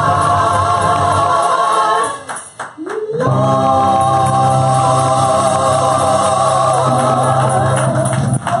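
Gospel praise-team singing: women's voices hold a long chord over keyboard. About two seconds in it breaks off for a moment, with a few sharp drum hits and a voice sliding upward, then a new chord is held.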